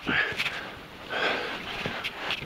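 A person breathing hard while squeezing through a tight passage: a short, noisy breath just after the start and a longer one about a second in, with a few faint knocks.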